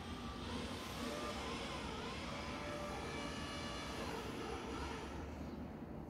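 A distant airplane engine droning steadily, its faint tones wavering slightly in pitch.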